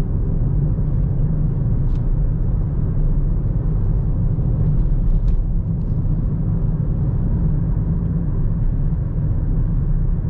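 Steady low drone of tyres and engine heard from inside the cabin of a 2013 Ford Fiesta 1.0 EcoBoost cruising at speed, even throughout.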